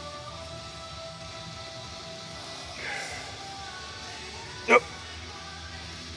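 Background music with steady held tones. One sharp knock sounds about three-quarters of the way through.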